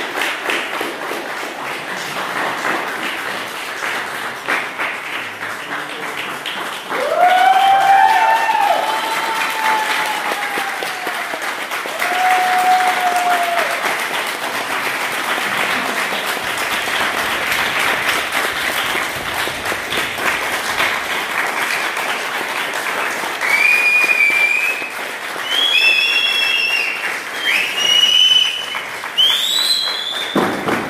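A group of people applauding steadily. Drawn-out cheering whoops come from about seven to thirteen seconds in, and high whistles rise and fall over the applause in the last several seconds.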